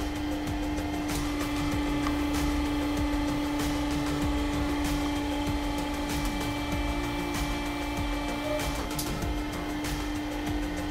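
Home-made hydraulic press's power unit running with a steady low hum, with scattered irregular clicks and knocks.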